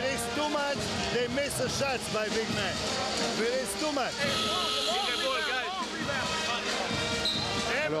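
A man's voice giving instructions in a team huddle during a timeout, over music playing in the arena.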